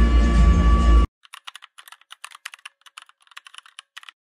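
Computer-keyboard typing sound effect: quick, separate keystroke clicks, roughly eight a second, for about three seconds. Before it comes a second of louder low rumble with steady tones that cuts off abruptly.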